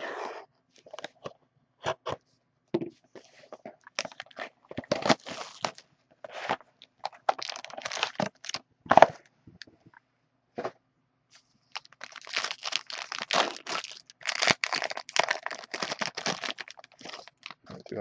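Plastic shrink-wrap on a sealed hockey card box being slit and torn off: a run of sharp crackles and tearing sounds, then a few seconds of dense crinkling plastic from about twelve seconds in.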